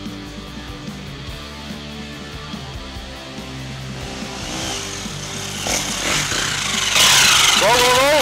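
Background guitar music, then from about halfway a KTM enduro dirt bike's engine grows louder as the bike climbs toward the microphone. It is loudest near the end, with a brief rising-and-falling rev.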